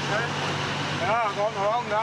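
A person's voice calling out twice over the steady drone of a motorcycle engine running at speed.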